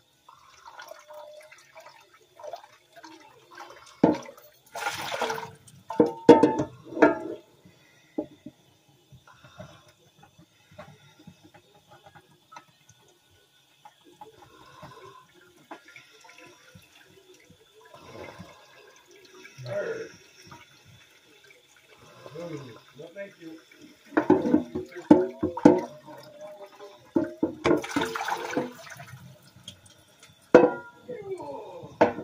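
Dishes being washed by hand at a kitchen sink: the tap runs in two short bursts, about five seconds in and near the end, with dishes clattering around them and quieter handling in between.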